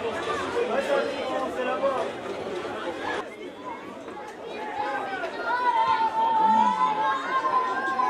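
Voices of people chatting at an outdoor football ground, several talking over each other, with an abrupt change about three seconds in. In the second half one voice calls out long and loud above the chatter.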